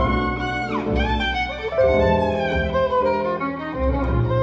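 Violin playing a jazz solo over acoustic guitar and upright double bass, with a falling slide on the violin about half a second in.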